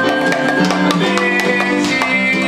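Live instrumental music: a hand drum struck by hand in quick strokes over held melody notes from other instruments.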